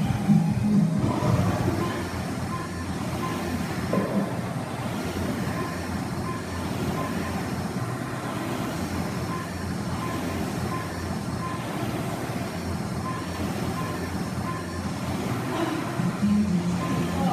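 Air rowing machine's fan flywheel whirring steadily as someone rows, under background music.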